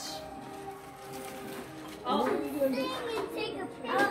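Indistinct talk of adults and children in a room, with music playing quietly underneath; a voice comes in louder about halfway through.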